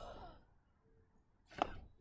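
A short, sharp puff of breath blown through a blowgun tube, firing a dart. About a second and a half later, a single sharp knock.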